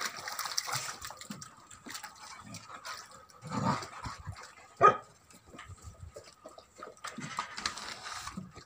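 Tibetan mastiff puppies lapping and splashing water in a shallow plastic paddling pool, with small scattered splashes throughout. One short, loud yelp from a puppy, falling in pitch, stands out about five seconds in.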